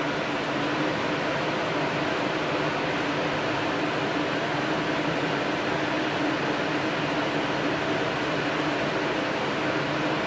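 Steady background hum and hiss with a faint low drone, even throughout.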